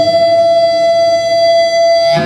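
Amplified single-cutaway electric guitar holding one long, steady sustained note.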